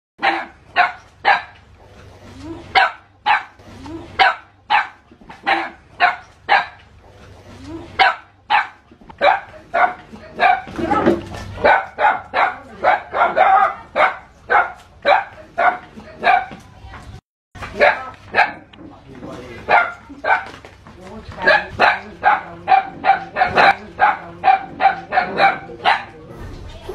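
A dog barking over and over, about two barks a second, agitated barking at a cobra it is confronting. The barks come thicker in the middle, and the sound cuts out briefly about seventeen seconds in.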